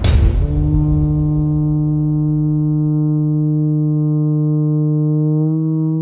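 Long wooden horn sounding one low note, held steady for over five seconds, after a drum stroke at the very start.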